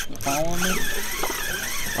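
Fishing reel's drag whining as a big fish pulls line off it, the pitch wavering up and down as the line speeds and slows. A barracuda has grabbed the hooked yellowtail and is running with it.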